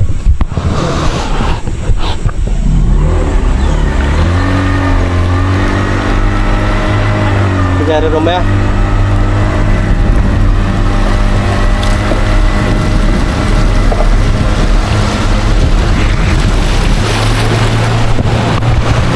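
Motor of a narrow river boat running under way, steadying to an even pitch about four seconds in, with a brief wavering near the middle.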